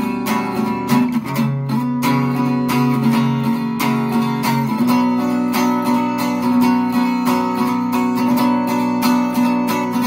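Archtop guitar strummed in a steady rhythm, a few strokes a second. The chord changes about a second in and again near five seconds, as the fretting fingers move to related shapes.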